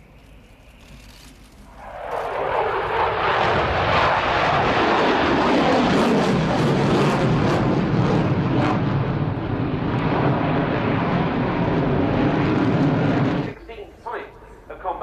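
Eurofighter Typhoon's twin Eurojet EJ200 turbofans in a display pass: a loud, steady jet roar that swells in about two seconds in and stops abruptly near the end.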